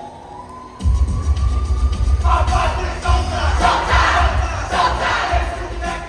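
A large group of students shouting a chant in unison over a bass-heavy backing track. A long rising note leads in, the deep bass beat starts about a second in, and the shouted chant comes in about two seconds in.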